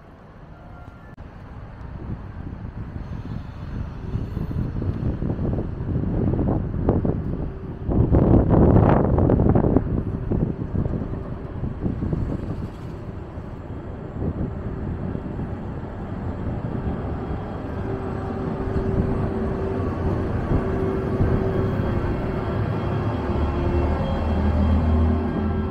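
Thalys high-speed train rumbling as it moves slowly along the platform, building to a loud rush about eight seconds in. Later a steady electric whine joins as the power car draws level.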